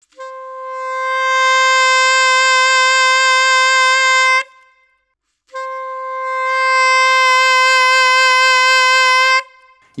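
A Yamaha YAS-280 saxophone holding one long loud note that swells up over the first second or so, then, after a brief break, a Yamaha YAS-875EX holding the same note loudly. Pushed to the max, the 280's tone can be heard thinning out and almost ultra-compressing, which happens less on the 875EX.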